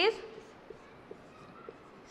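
Marker pen writing on a whiteboard: a few faint taps and strokes of the tip against the board over quiet room tone.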